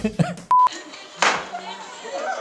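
A short electronic beep, one steady tone, cuts in about half a second in among talk and laughter. A sudden noisy hit follows about a second later.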